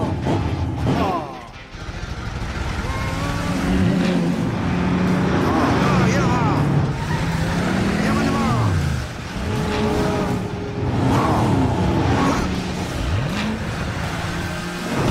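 Cartoon race-car engine sound effects, the engine pitch revving up and down again and again as the car speeds along in a chase.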